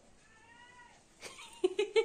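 A domestic cat meowing: a faint meow about half a second in, then a louder, lower call with a few clicks near the end.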